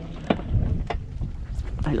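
Uneven low rumble of wind on the microphone, with a few light clicks, and a man starting to speak near the end.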